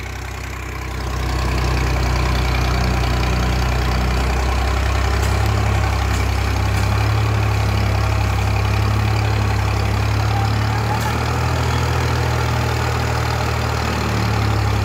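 ACE DI 6565 tractor's diesel engine running steadily with a deep, low drone while it hauls a trailer heavily loaded with sugarcane. It grows louder about a second in, then holds level.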